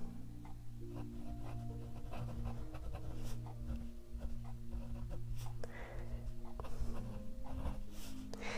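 Faint scratching of a fine-nib fountain pen on paper as words are written, over soft background music.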